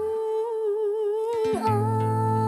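Music: one long melodic note with a wavering vibrato, starting with a sharp attack. About one and a half seconds in, a plucked-string accompaniment with a bass line comes in.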